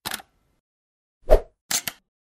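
Logo-animation sound effects: a short crackle at the start, a pop just past a second in, and two quick clicks near the end.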